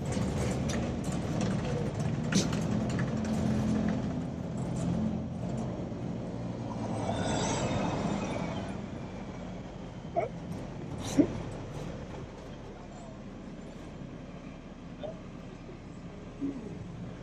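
City street traffic: a vehicle engine hums low for the first few seconds, then a vehicle passes about seven to eight seconds in. A few sharp clicks or knocks stand out, the loudest about eleven seconds in.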